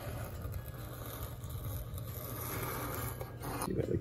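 Back of a hobby-knife blade drawn along a brass rod, scraping across brown paper bag to score fold lines: a steady, soft scraping.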